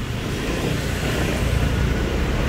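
Road traffic: a car going by on the street, a steady rumble that grows slightly louder.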